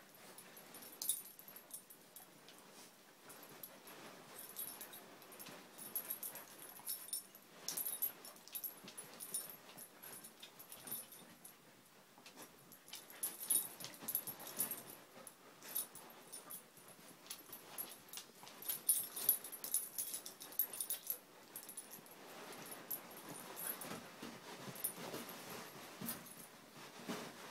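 Two Siberian husky puppies play-fighting, with small dog vocal and breathing noises over scuffling on a fabric surface. The noises come in irregular bursts, busiest twice in the middle stretch.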